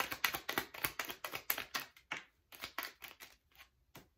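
A deck of tarot cards being shuffled in the hands: a rapid run of papery card flicks, about seven a second, that slows and thins out about halfway, then one sharp snap as a card is laid down on the table at the end.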